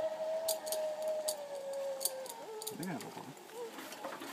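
Zipline trolley running along the steel cable under a rider's weight: a single steady whine that slowly drops in pitch and fades out a little over halfway through. Light clicks run through it, and a brief distant voice comes near the end.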